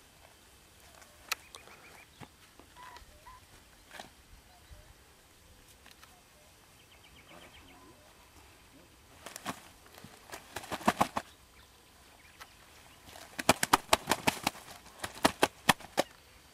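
Carp thrashing on a plastic unhooking mat: a burst of quick slaps near the middle and a longer burst near the end. Faint bird chirps early on.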